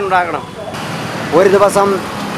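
Motor scooter and motorcycle traffic running in the background, an even noise heard plainly in the short gap between a man's spoken words.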